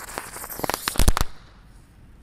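Lotus-type ground-spinner firework (mercon teratai) going off on the ground: a light fizz, then a quick run of sharp cracks about half a second to a second in, the loudest near the one-second mark.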